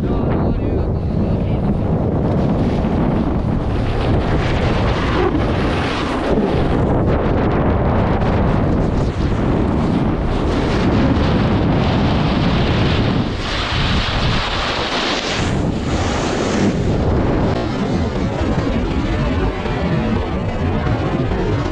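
Wind rushing hard over a moving camera's microphone while riding fast down a groomed slope, with the hiss and scrape of snowboard edges carving the snow swelling and fading through the turns.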